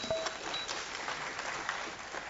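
Audience applauding, an even clatter of many hands clapping.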